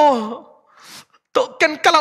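A man preaching with strong feeling, his voice falling at the end of a phrase. About a second in there is a short audible breath, then he speaks again.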